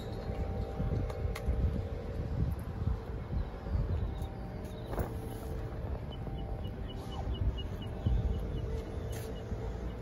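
Wind buffeting the microphone in uneven gusts, over a faint steady hum. About six seconds in, a short run of quick high chirps, roughly four or five a second, lasts about two seconds.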